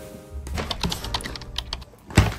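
Stiff paper shopping bag crinkling and rustling as it is handled, a quick run of crisp crackles starting about half a second in, over soft background music.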